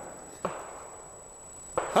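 A single sharp knock about half a second in, followed by a short fading tail.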